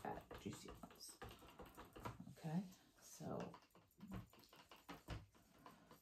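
Wooden stir sticks clicking and tapping quickly and irregularly against the sides of plastic cups as acrylic pouring paint is stirred.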